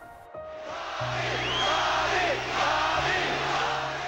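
A boxing arena crowd cheering and yelling, starting about a quarter-second in, with many voices shouting over a dense roar. Music with steady low bass notes plays underneath.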